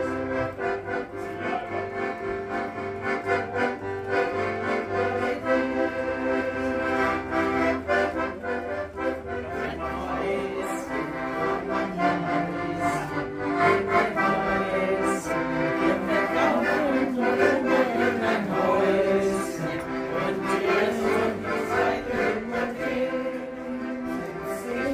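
Piano accordion playing a tune: held chords with a melody moving over them, and a low bass note sustained through roughly the first ten seconds.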